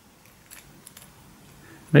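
Faint, small metallic clicks and rattles from a brass euro cylinder lock being handled and turned in the hand.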